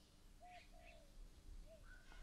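Near silence with a few faint bird calls: about three short, soft notes.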